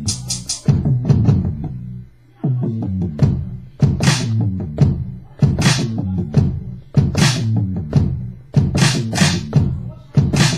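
West Coast hip hop beat played on a Maschine Studio with Marble Rims drum sounds: a deep bassline under kick drums, with a sharp snare-type hit about every second and a half. The beat drops out briefly about two seconds in.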